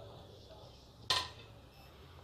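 A single sharp clink of kitchen dishes about a second in, with a brief ring after it, over a faint low hum.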